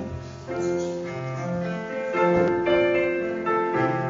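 Piano playing a hymn tune in held chords, a new chord every half second to a second.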